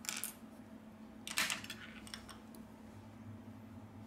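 Two brief, light clatters of small hard objects on a work surface: one right at the start and a louder one about a second and a half in. These are phone parts and a metal tool being set down and picked up during a phone teardown.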